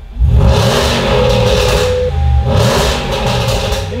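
Range Rover SVR's five-litre V8 revved hard twice in quick succession through a very loud exhaust. Meanwhile the parking sensors sound a steady tone that steps up in pitch about halfway, set off by the exhaust noise.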